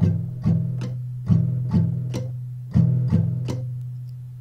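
Acoustic guitar with a capo on the fourth fret, strummed slowly through a 6/8 strumming pattern: eight strums at roughly half-second gaps, falling in groups, each chord ringing on between strokes.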